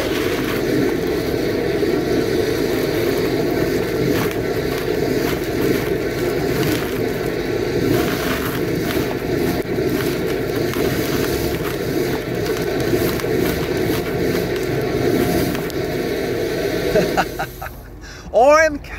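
High-pressure water from a hydro jetter blowing back out of a blocked drain pipe as a loud, steady spray that stops near the end. The jetter nozzle is stuck at a bend or at the blockage, so the water comes back out of the pipe.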